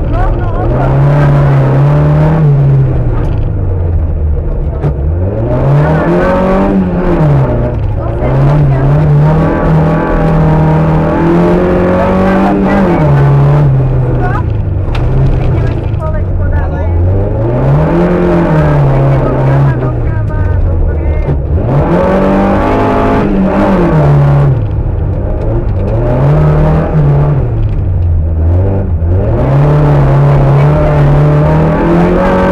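Škoda 105 rally car's rear-mounted four-cylinder engine heard from inside the cabin, revving hard through the gears on a slalom run. The engine pitch climbs and then drops sharply several times, about every 3 to 5 seconds, as the driver lifts and shifts for the turns.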